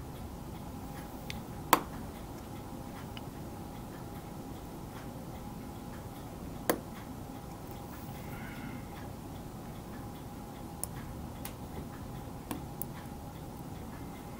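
Steady low room hum with a few sharp, irregular clicks, two of them louder than the rest: small hobby tools touching the brass photo-etch fret as a knife blade is brought to the part.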